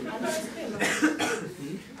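A person coughing, two quick rough bursts about a second in, amid speech.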